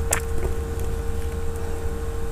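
A sharp click just after the start and a fainter one about half a second in as a Nokia 5630's plastic casing is pressed into place at its sides, over a steady low hum.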